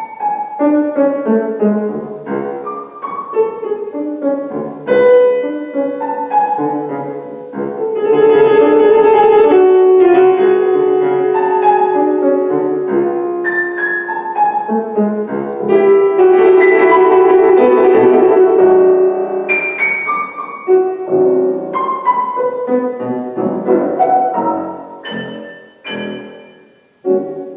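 Solo grand piano improvisation: a stream of notes that builds to two loud, dense passages, about eight and sixteen seconds in, then thins out and grows quieter near the end.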